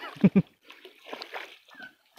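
Hooked hampala barb thrashing at the water's surface, splashing in short irregular bursts, after a brief voice at the start.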